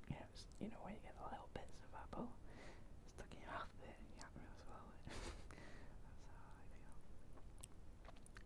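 A man whispering quietly, with a brief breathy rush about five seconds in.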